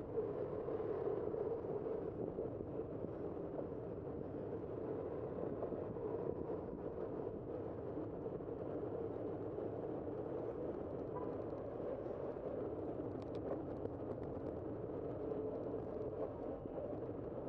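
Steady rushing noise of riding a bicycle along a city street: wind and tyre noise, with a few faint ticks about three-quarters of the way through.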